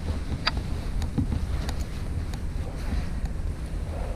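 Wind buffeting the action camera's microphone: a steady low rumble, with a few faint clicks.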